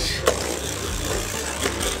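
Two Beyblade Burst spinning tops, Dead Phoenix and Cho-Z Spriggan, spinning in a plastic Beyblade stadium: a steady whir of their tips running on the stadium floor, with two short clicks near the start.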